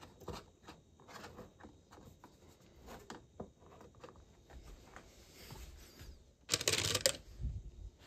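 Cardboard and plastic pieces being handled: light scattered taps and rustles, with a louder scraping rustle lasting about half a second near the end.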